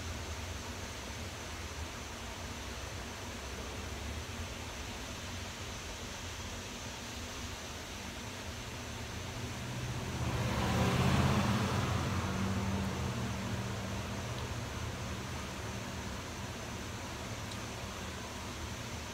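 A motor vehicle passing by, its sound swelling about ten seconds in and fading away over the next few seconds, over a steady low background hum.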